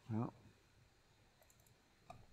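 A man says "well", then a few faint computer mouse clicks a little over a second later, as desktop software is being closed down.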